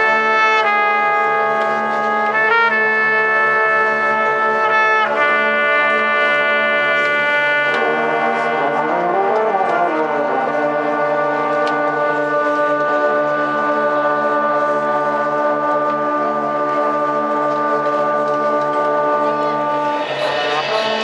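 Marching band brass section of trombones, trumpets and baritone horns playing slow, sustained chords that change every couple of seconds. About eight seconds in, some voices move in a short rising-and-falling figure, then one chord is held for the last eight seconds or so.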